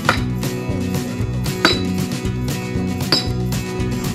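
Axe blows splitting firewood on a chopping block: three sharp strikes about a second and a half apart, each with a brief metallic ring, over background music.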